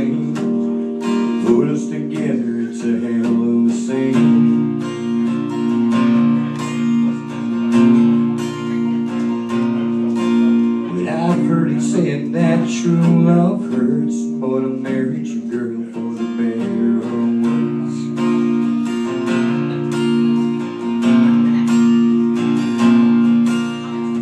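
Solo acoustic guitar strummed in an instrumental break of a country song, steady chords with no singing.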